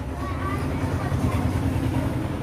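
Steady low background rumble with faint voices in it.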